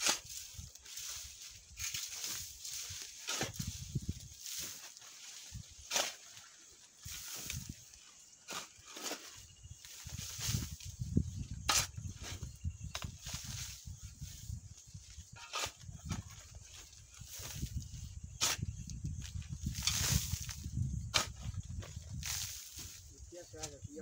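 Long-handled garden tool scraping and scooping wood ash in a metal wheelbarrow, with irregular scrapes and knocks throughout. A low rumble runs through much of the second half.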